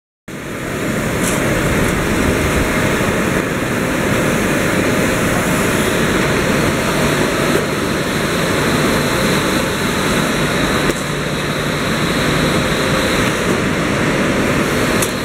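Steady machinery noise in a metal-working factory, with a few faint clicks.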